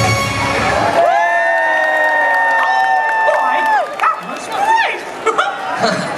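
A pop dance song's beat stops about a second in, leaving long held final notes that end together at about four seconds. A crowd of children and adults then cheers and shouts.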